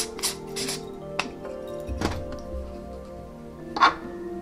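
Handling noise of a thin magnetic 82 mm UV filter being fitted to a camera lens: a quick run of short scraping strokes, a couple of light clicks, then a louder knock near the end. Background music with steady held notes plays throughout.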